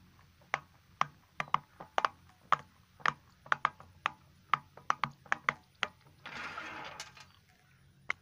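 Silicone pop-it fidget toy bubbles pressed in one by one with the fingertips: a quick, irregular run of small sharp pops, two to four a second. A short stretch of rustling noise a little after six seconds in.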